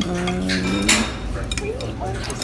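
Chopsticks and a spoon clinking against a ceramic noodle bowl, with the sharpest clinks about half a second and just under a second in. Over the first second a person's voice holds one steady note, like a drawn-out hum.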